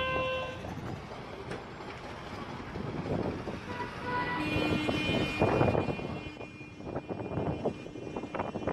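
Street traffic noise with a vehicle horn sounding twice: a long blast about halfway through and a second one straight after.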